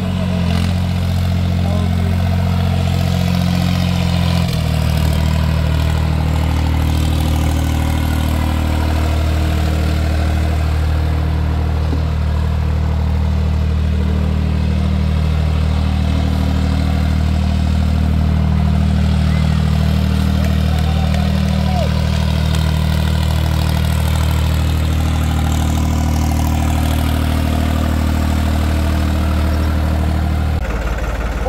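New Holland 3600 tractor's three-cylinder diesel engine running steadily at low revs, its note dropping slightly about four and a half seconds in, then holding even.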